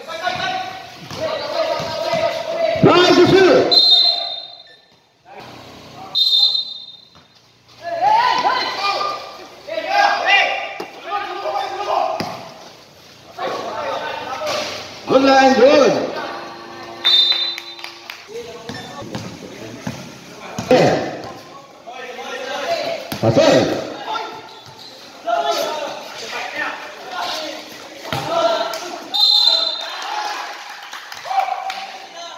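Basketball game sounds on a roofed court: a ball bouncing and voices calling out over the play, with a few short high squeaks typical of sneakers on the court surface.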